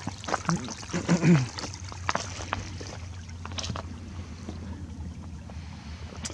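Shallow stream trickling among rocks and ice. Short voice sounds, not words, come in the first second and a half, and a few sharp clicks follow.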